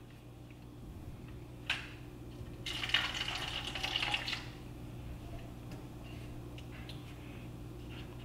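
Nutrient solution poured into a hydroponic container, about a second and a half of pouring starting nearly three seconds in, after a short click.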